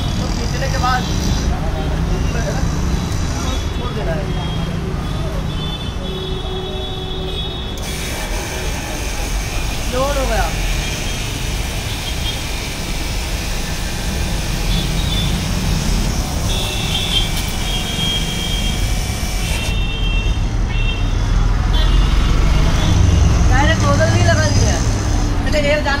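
A 3 HP high-pressure washer runs for about twelve seconds, a loud hiss of motor and water spray that starts suddenly about a third of the way in and cuts off suddenly. Under it, street traffic rumbles steadily, with a few short horn toots.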